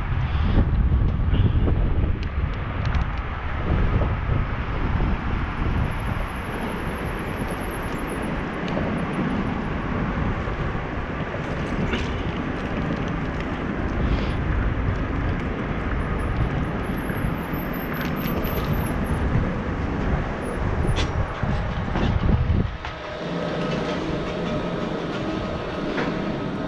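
Wind buffeting an action camera's microphone on a moving bicycle, with rolling road noise and a few sharp knocks and rattles. Near the end the wind rumble drops away suddenly, leaving a quieter steady hum.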